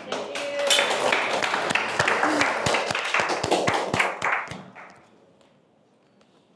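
A group of people clapping, dying away about four and a half seconds in.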